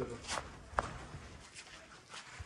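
A couple of brief scuffs and one sharp click from a person moving on sandy rock, faint in between; a voice trails off right at the start.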